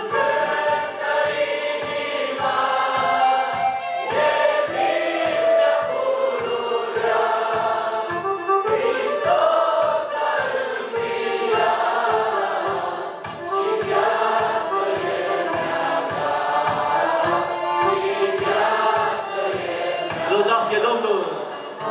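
A church praise group of women's and men's voices singing a worship hymn together through microphones, over a keyboard accompaniment with a steady beat.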